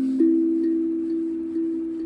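HAPI steel tongue drum in the A Akebono scale played with mallets: a strong note struck about a quarter second in rings on and slowly fades, with a few lighter notes over it.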